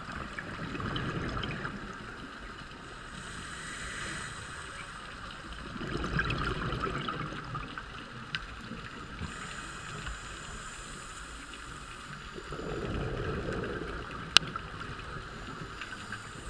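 Scuba diver's regulator breathing underwater: three bursts of exhaled bubbles about six seconds apart, with a quieter inhale hiss between them. A single sharp click near the end.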